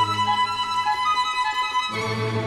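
Background string music: a solo violin playing quick high notes over a lower string accompaniment, which thins out through the middle and comes back in near the end.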